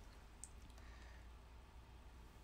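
Near silence: low room hum with one faint, short click about half a second in.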